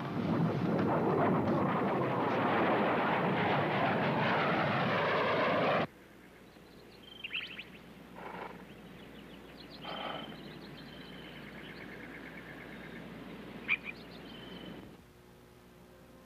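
A loud rushing, swirling wash of noise, a whooshing transition effect, cuts off suddenly about six seconds in. After it, birds chirp and trill quietly in short calls.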